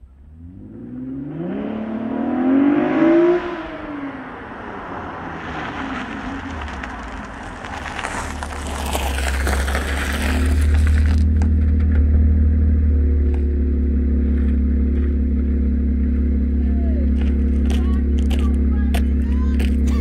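A 2018 Camaro RS's six-cylinder engine revs up as the rear tyres spin on loose gravel in a light burnout, the revs rising and falling over a loud hiss and crackle of tyres and gravel. About 11 seconds in the hiss cuts off suddenly, and the engine settles into a steady low idle. The car was in Tour mode, which kept the burnout short.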